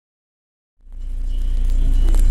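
Silence, then about a second in a steady low rumble fades in: a 1996 Mazda MPV's WL-T turbo-diesel idling, heard from inside the cabin.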